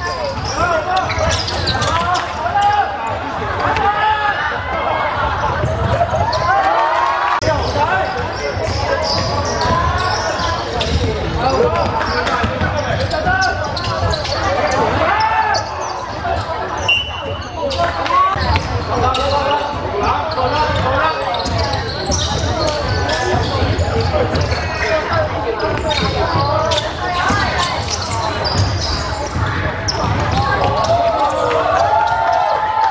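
A basketball dribbled on a hardwood court, with short bounces, under many young voices calling and shouting over one another, all echoing in a large sports hall.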